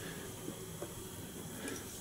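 Quiet room tone with a couple of faint soft ticks from hands working at a fly-tying vise, winding turns of feather hackle onto the hook.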